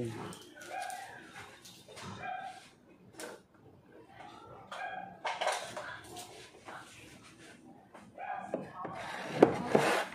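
Kitchen handling noises, with pots and utensils being moved about on a counter. There are a few brief faint vocal sounds early on and a sharp knock near the end, which is the loudest sound.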